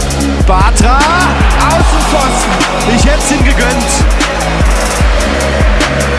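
Background electronic music with a steady bass-drum beat and sliding, gliding high notes.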